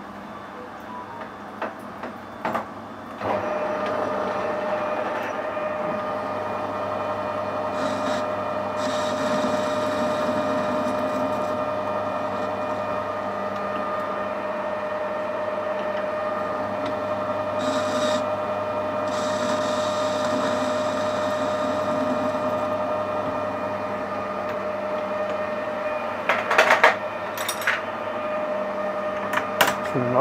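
Metal lathe starting about three seconds in and running with a steady whine, with stretches of cutting noise as the tool works a small soft-steel part held in the chuck. A few sharp clicks come before it starts and near the end.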